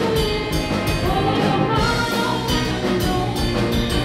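A rock band playing live: a drum kit keeping a steady beat under electric guitars and bass.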